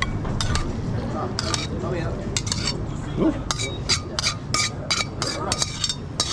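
Metal tongs scraping and clinking against a metal sauté pan and a plate as tagliatelle is pulled out of the pan. A run of short, sharp clinks that comes thick and fast from about two seconds in.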